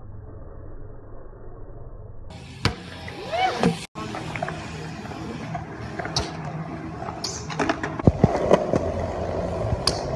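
BMX bike riding on concrete skatepark surfaces: tyres rolling, with several sharp clacks of landings and bike parts striking concrete, the loudest about eight seconds in. The sound changes abruptly a couple of seconds in, where it goes from muffled to clear at a cut between clips.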